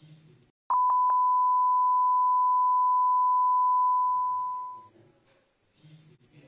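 Electronic test tone: a single steady pitch that starts with a few clicks about a second in, holds loud for about three seconds, then fades out near the five-second mark.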